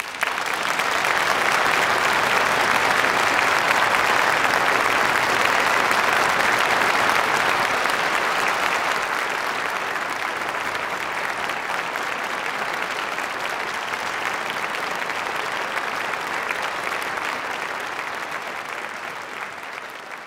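Audience applauding, breaking out suddenly and then holding at a steady level. It eases slightly after about eight seconds.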